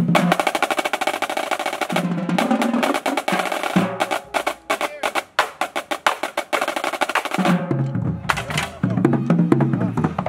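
Marching drumline of snare drums and tenor drums playing a fast cadence of rapid stick strokes and rolls. It thins to sparser strokes through the middle, then the full line comes back in near the end.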